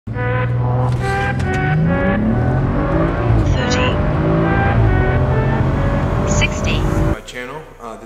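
BMW 335i's turbocharged inline-six under full-throttle acceleration from a standing start, heard inside the cabin, its pitch climbing in repeated rising sweeps. The sound cuts off suddenly about seven seconds in.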